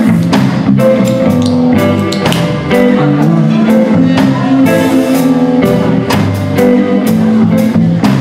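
A live blues band playing: electric guitars, electric bass and a drum kit keeping a steady beat.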